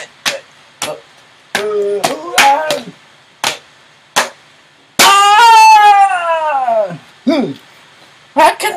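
A person's voice making short wordless sounds, then a loud, long cry falling steadily in pitch about five seconds in, with several sharp clicks scattered through.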